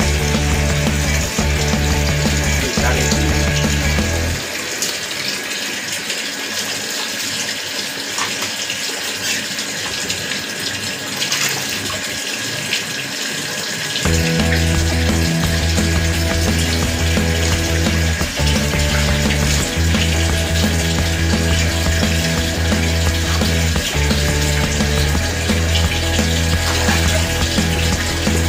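Water splashing steadily into a fish pond, the surface churned to froth. Background music with a stepping bass line plays over it, dropping out from about four seconds in until about fourteen seconds, when only the water is heard.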